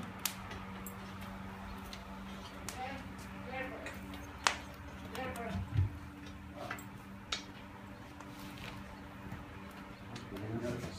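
A long steel pulling rod clicking and knocking against the bricks and ware inside a wood-fired anagama kiln as a tea bowl is fished out of the firing hole. There are a few sharp clicks, the loudest about four and a half seconds in, over a steady low hum.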